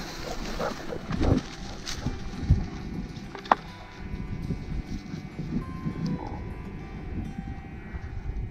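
Wind rumbling on the microphone, with a few soft thumps and a brief thin high tone about three and a half seconds in.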